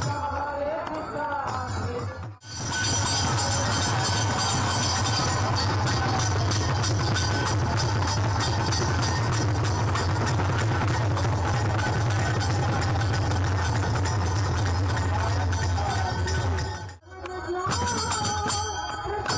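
Devotional kirtan music: voices singing over drums, broken off about two seconds in. Then many khol drums play a fast, dense, loud rhythm together with ringing hand cymbals, until a short break near the end.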